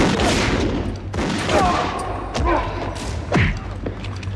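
Movie gunfire: a volley of gunshots in quick succession, ringing in a large hall, mixed with shouting.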